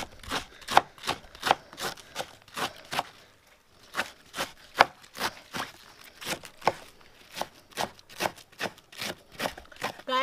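Kitchen knife slicing a green cabbage head into thin shreds, a crisp cut about two to three times a second, with a short pause about three seconds in.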